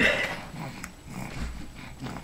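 A baby's short vocal sound right at the start, followed by fainter, quieter sounds.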